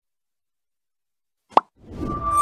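Silence, then about one and a half seconds in a single short pop sound effect, followed right at the end by the start of electronic outro music.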